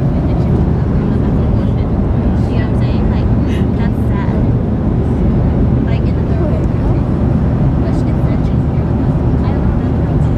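Airliner cabin noise in flight: a steady, loud low rumble.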